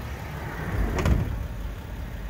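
Sliding side door of a Mercedes-Benz Sprinter van, fitted with a door-closing assist, pushed shut: a single thud about a second in, over a steady low rumble.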